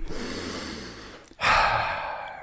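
A person breathing close to the microphone: a long drawn-in breath, then a louder sighing breath out starting about one and a half seconds in and trailing away.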